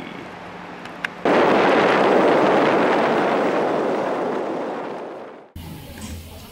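A sudden loud burst of noise about a second in, fading slowly over about four seconds and cut off abruptly near the end.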